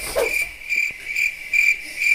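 Cricket chirping: a high-pitched chirp pulsing about three times a second.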